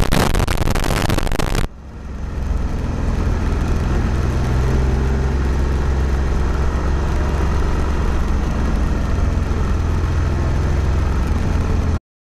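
Wind buffeting and road rumble on the microphone of an action camera moving along a paved road, a steady low rumble. It opens with a loud burst of rushing noise that drops away suddenly after about a second and a half.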